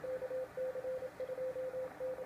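Morse code (CW) from an amateur radio receiver: a single steady tone keyed on and off in short and long elements, dots and dashes.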